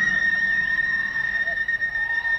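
Flute holding one long, steady high note, with faint wavering pitch glides around it, in a poor-quality live bootleg recording.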